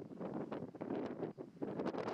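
Wind buffeting the camera's microphone in uneven gusts, a rumbling rush that rises and falls several times a second.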